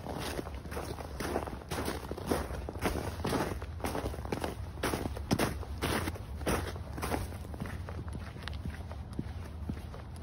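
Boots crunching through packed snow in fast, heavy footsteps, about two steps a second.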